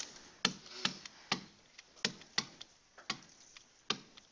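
A digital pen tapping and clicking against the writing surface as handwriting strokes go down, with sharp irregular taps about two a second.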